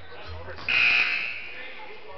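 Gym scoreboard buzzer sounding once, cutting in sharply well under a second in and fading within about half a second, over voices in the gym.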